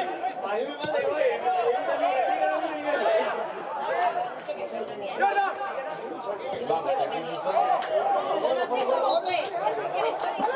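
Indistinct chatter of several voices talking over one another, continuous throughout.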